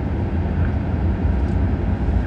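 Steady low rumble of a jet airliner's cabin noise on the ground, the hum of the aircraft's air systems running.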